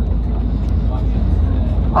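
Steady engine and road rumble inside a moving vehicle's cabin, a constant low drone with a hiss of tyre and wind noise.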